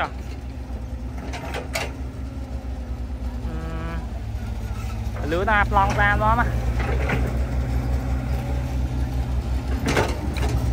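Diesel engine of a CAT mini excavator running steadily while it digs, growing louder from about five seconds in as the hydraulics take load. A person's voice is heard briefly in the middle.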